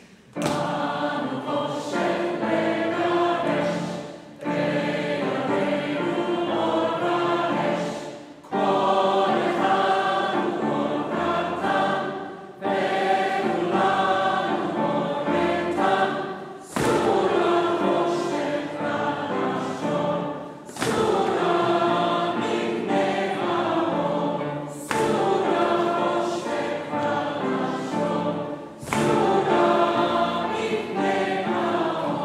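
Mixed choir of men's and women's voices singing a Hebrew Hanukkah song. It comes in repeated phrases of about four seconds, each starting sharply.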